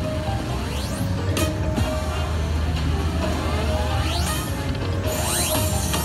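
Video slot machine's electronic game music and sound effects while the free-spin reels run, with several rising sweep sounds. Near the end a bright, shimmering flourish marks the triggering of the Block Bonanza bonus win. A steady low casino hum runs underneath.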